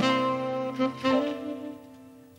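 Tenor saxophone playing a jazz line of held notes that step from one pitch to the next. The phrase trails off and fades near the end.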